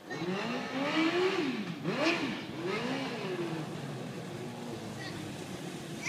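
Suzuki 2003 GSX-R600 fuel-injected, water-cooled inline-four motorcycle engine in a dune buggy, revving up and down about three times in the first three seconds as the buggy drives, then running steadier at lower revs.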